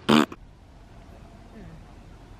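A brief voice sound right at the start, then faint, steady outdoor background noise.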